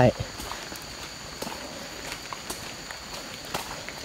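Footsteps of a person walking through grass and undergrowth: a few soft, irregular steps and small rustles, over a steady high-pitched insect drone.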